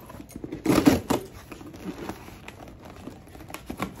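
Scissors slitting the packing tape on a cardboard shipping box, with the tape tearing and the cardboard rustling. The loudest rasp comes about a second in, followed by lighter scraping and small clicks.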